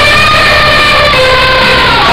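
A loud, single held horn-like note with overtones, sounded as one long blast, its pitch wavering only slightly.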